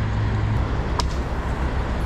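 Crane truck's diesel engine running with a steady low hum. A single sharp click with a brief ring comes about a second in.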